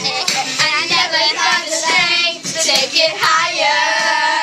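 A group of young girls singing together, loud and high-pitched.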